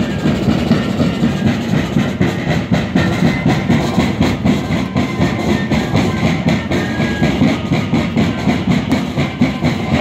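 Live band music for a moseñada dance: many low, breathy cane flutes played together over a steady, regular drum beat.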